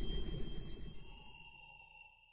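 Logo sting sound effect: high, steady ringing tones over a low rumble. About a second and a quarter in, the tones and rumble cut off, leaving two fainter tones that fade away.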